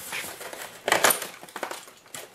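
Styrofoam packing insert rubbing and creaking as it is handled, in short scraping bursts, the loudest about a second in.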